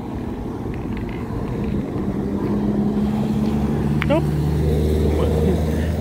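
A steady low engine hum, setting in about two seconds in, over a low rumble of wind on the microphone.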